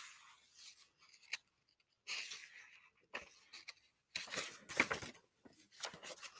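Paper pages of a paperback book rustling as they are handled and turned, in several short bursts, with a small click a little over a second in.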